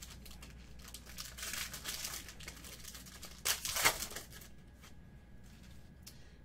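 Clear plastic wrapper of a trading-card pack crinkling as it is torn open, with the loudest tearing about three and a half seconds in.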